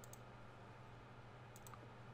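Near silence with a faint steady hum and four soft computer mouse clicks, in two quick pairs: one at the start and one about one and a half seconds in.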